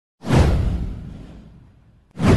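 A single whoosh sound effect from an animated title sequence: it starts sharply about a fifth of a second in, with a deep rumble underneath, and fades away over about a second and a half.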